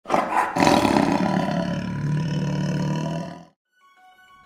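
A big cat's roar played as a sound effect: one long, loud, rough roar that cuts off sharply about three and a half seconds in.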